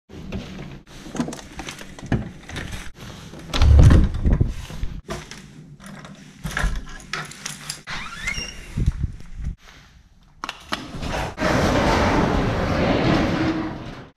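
A house door being handled and opened: the knob turning, with clicks and knocks, a heavy thump just before four seconds in and a brief rising squeak about eight seconds in. A steady rushing noise fills the last couple of seconds.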